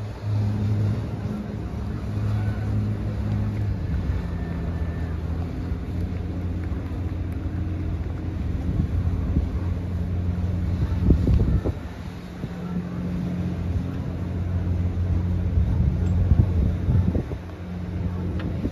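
A boat engine droning steadily, its pitch shifting a little in steps, with wind gusting across the microphone, loudest about eleven seconds in.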